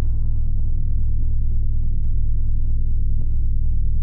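Cinematic logo-sting sound design: a deep, steady rumbling drone with a thin, high, sustained tone held above it.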